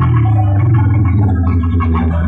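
Loud, bass-heavy music played through a competition sound system of stacked power amplifiers and horn loudspeakers. The bass dominates and there is little top end.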